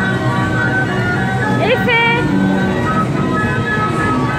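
Kiddie carousel's tinkly electronic jingle music playing steadily. A voice rises in a short call about two seconds in.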